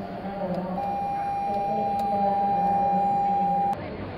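A steady electronic beep that comes in about a second in, holds one pitch for about three seconds and cuts off suddenly, over a murmur of voices.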